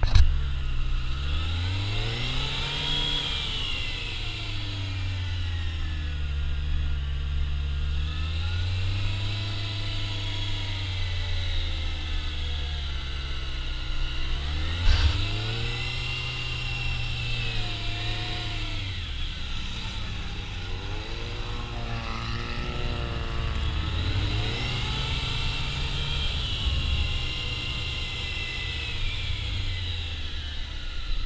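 Honda CBR600 F4i inline-four sport bike engine, heard from the rider's helmet, revving up and dropping back every few seconds as the bike accelerates and slows through tight cone turns. There is a single sharp knock about halfway through.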